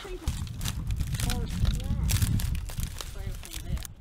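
Footsteps crunching over dry reed stalks and loose shale, with reeds rustling and snapping as they are pushed through, over a steady low rumble.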